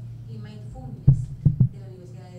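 Three short, low thumps on a handheld microphone, the first and loudest about a second in and two more close together half a second later: handling noise from the mic being shifted in the hand.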